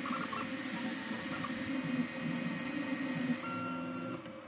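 Two Trees SK1 CoreXY 3D printer printing at high speed: the stepper motors whine and change pitch with each rapid move over a steady fan hum. About three and a half seconds in, the motor sound settles into steady held tones, then drops quieter.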